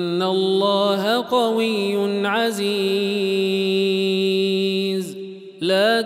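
A male reciter's voice chanting the Quran in the Warsh reading, drawing out one long, steady melodic note with a few ornamental turns. It falls away about five seconds in, and after a short breath he starts the next verse.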